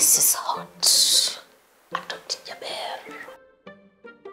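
A voice speaking in hissy, whispered bursts, then short plucked pizzicato string notes start about three and a half seconds in as comedy background music.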